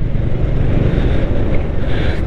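Motorcycle on the move, heard from the rider's own microphone: a loud, steady low rumble of wind buffeting and engine and road noise, with no distinct engine note standing out.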